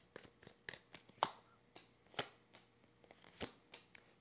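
A deck of tarot cards being shuffled by hand and cards drawn off it: irregular soft flicks and riffles, with two sharper snaps about one and two seconds in.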